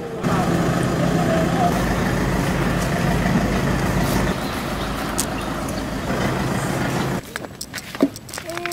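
A motor vehicle engine rumbling steadily, with voices mixed in; it starts suddenly just after the start and cuts off abruptly about seven seconds in.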